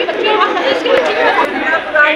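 Several people talking at once, a loose chatter of voices with no other sound standing out.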